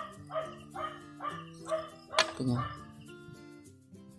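A dog barking about twice a second, six short barks in a row, over steady background music, with a sharp click about two seconds in.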